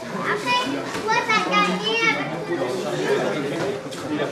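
Several high-pitched voices, children's by the sound, calling and chattering, loudest in the first half, over a lower murmur of talk.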